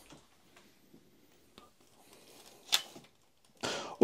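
Faint handling clicks, then one sharp click nearly three seconds in as the terminal's mains plug is disconnected at the wall socket.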